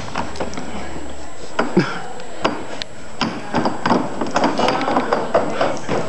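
Irregular knocks and clatter of feet landing on stacked chairs as someone jumps up and climbs the stack.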